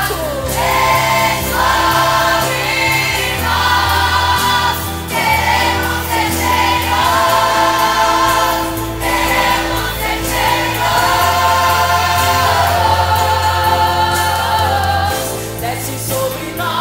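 A teen choir singing a gospel hymn with orchestral accompaniment, over a bass line that moves to a new held note every two seconds or so.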